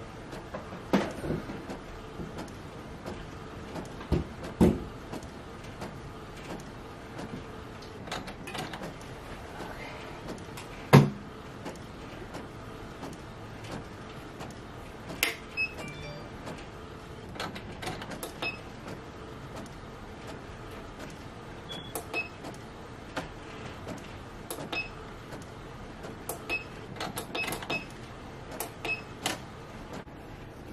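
Epson EcoTank ET-8550 wide-format inkjet printer working through a print on a 13x19 sheet: a steady mechanical running sound broken by scattered clicks and knocks, the loudest about eleven seconds in.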